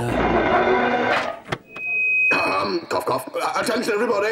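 Microphone and portable PA speaker giving a steady high feedback whine for about a second, around two seconds in. Before it comes a dense stretch of scraping and clattering, then a single click.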